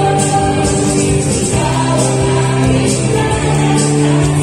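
A women's vocal group singing a Christian gospel song through microphones, holding long notes, over steady low instrumental accompaniment.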